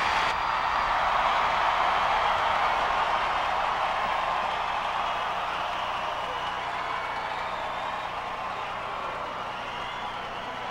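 Large concert audience cheering and shouting in a darkened amphitheatre while waiting for the band, a steady crowd roar that slowly fades.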